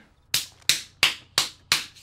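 Five sharp hand claps in a steady rhythm, about three a second.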